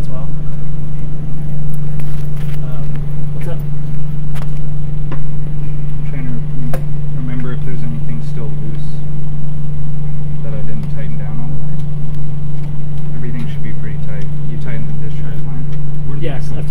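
A loud, steady low machine hum that does not change, with faint voices in the background and a few light clicks of hands working metal fittings.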